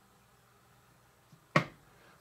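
A fork pressing crisscross marks into cookie dough on a miniature cookie sheet: mostly quiet, then one sharp click about one and a half seconds in as the fork meets the sheet.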